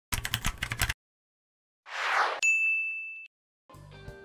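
Sound effects for an animated search bar: a quick run of keyboard-typing clicks in the first second, then a whoosh and a bright electronic ding held for about a second. Music begins near the end.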